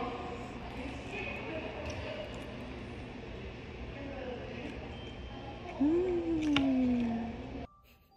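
A woman's long, falling "hmm" of enjoyment while eating a glazed doughnut, over steady background room noise with a few faint clicks.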